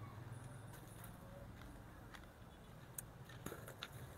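Near silence: a faint steady low hum, with a few soft clicks in the last second.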